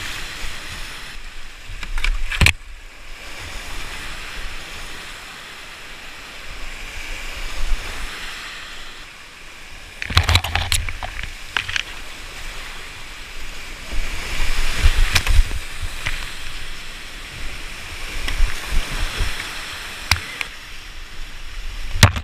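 Rushing whitewater of a steep creek around a kayak running rapids, with several sudden loud splashes breaking in, the biggest about ten and fifteen seconds in.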